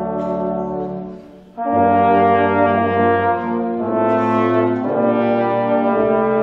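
Brass ensemble of trombones, baritone horns and a tuba playing a Christmas carol in slow, held chords. A chord fades away about a second in, and after a brief gap the next phrase comes in loud just before two seconds in, with chord changes around four and five seconds in.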